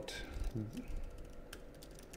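Computer keyboard typing: a quick run of light key clicks as a short phrase is typed.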